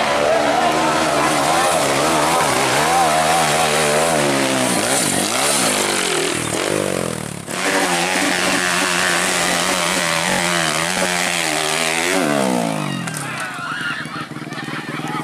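Dirt bike engine revving hard under heavy throttle on a steep hill climb, its pitch rising and falling again and again. There is a sudden short break just past the middle, and near the end the revs fall away as the bike goes down.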